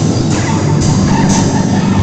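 Live band playing loud rock music, with drums and bright cymbal hits about twice a second over a dense low wash of sound.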